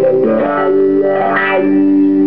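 Distorted electric guitar played through a foot-operated effects pedal: held notes, with a change of note about a quarter second in and a sweep of brightness about one and a half seconds in.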